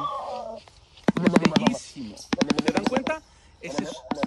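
Shoebill clattering its bill: two rapid bursts of wooden knocking, about a dozen knocks a second, each lasting under a second with a short pause between.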